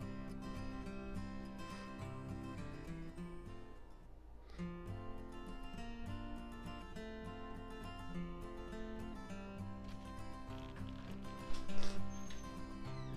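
Background instrumental music with held notes changing every second or so. A brief louder knock near the end.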